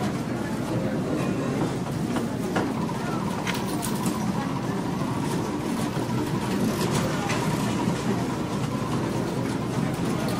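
Casino floor ambience: a steady murmur of many voices with scattered clicks and faint electronic tones from slot machines.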